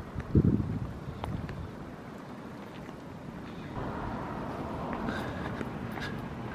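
Wind buffeting the microphone while walking outdoors, with one loud low gust or handling bump about half a second in. A fainter rushing noise builds up over the second half.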